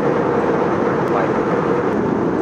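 Steady cabin noise inside an Airbus A320 airliner in cruise: an even, unbroken rush of airflow and engine noise.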